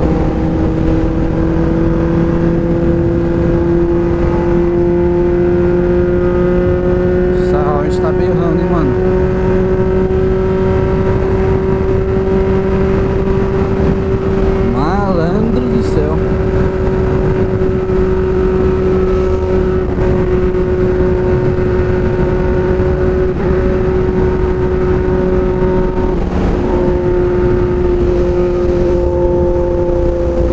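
Honda Hornet 600's inline-four engine running at a steady cruise on the road, its pitch holding nearly even with only a slight rise and fall, over a steady rush of wind.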